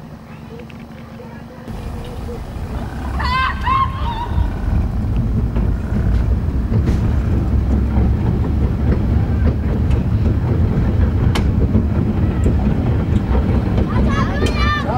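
Metre-gauge electric train in motion: a low rumble of wheels on track, mixed with wind, builds about two seconds in and then holds steady, with a few sharp clicks. A brief high wavering sound comes a little after three seconds in.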